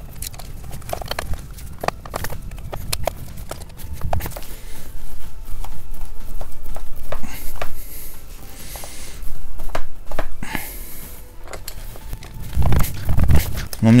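A run of irregular metallic clicks, knocks and creaks from a pipe wrench and a pliers wrench straining against each other on a brass radiator-valve union nut, under the greatest force one man can apply. The nut holds and does not crack.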